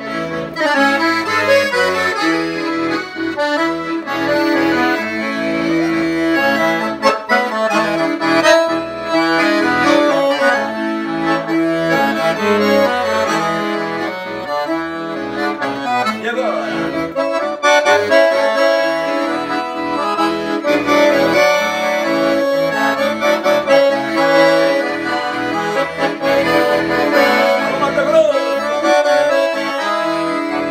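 Solo piano accordion playing a Brazilian roots (música raiz) tune without a break, a melody over bass notes.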